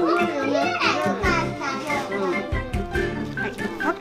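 Children's voices talking over background music.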